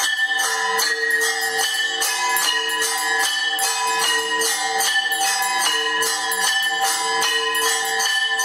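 Hindu temple arti bells ringing continuously, struck in a fast, even rhythm of about four strokes a second, their tones sustained between strokes.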